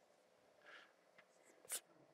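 Chalk writing on a blackboard: faint scratching strokes, with one sharper chalk tap near the end.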